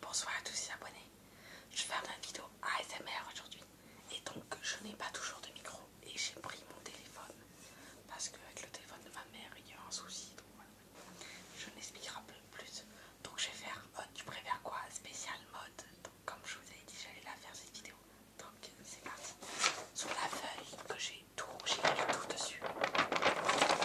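A young man whispering, in short breathy phrases.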